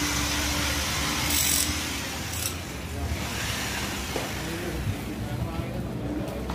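A steady low machine hum, with two brief hissing bursts in the first half.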